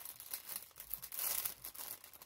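Packaging crinkling and rustling as it is handled and pulled open, an irregular run of fine crackles.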